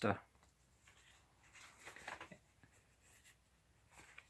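Faint rustle of a book's paper pages being handled, mostly about two seconds in, amid near quiet.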